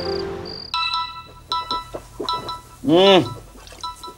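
Mobile phone ringtone: a repeating run of short electronic chime notes starting about a second in, as fading piano music ends. A brief rising-and-falling voiced 'hm' comes about three seconds in.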